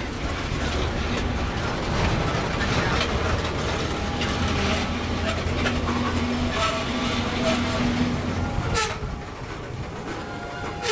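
Freight train of tank cars rolling past close by: a steady rumble of wheels on rail with repeated clicks as the trucks cross rail joints. A sharp clank comes about nine seconds in, after which the noise drops a little.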